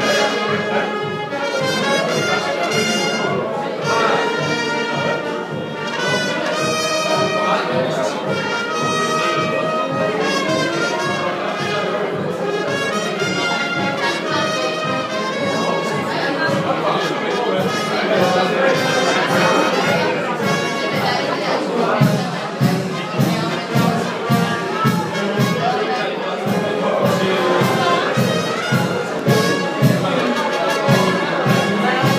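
Brass band music with trumpets and trombones playing a tune; from about two-thirds of the way through, a regular drum beat comes through strongly.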